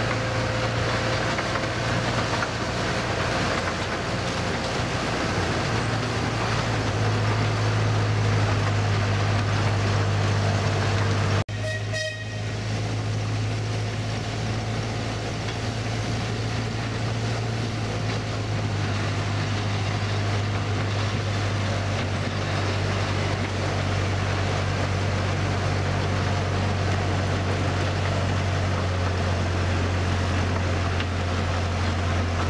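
Miniature railway train running along its track, heard from a carriage behind the locomotive: a steady low rumble from the loco and wheels. A short high toot sounds near the middle.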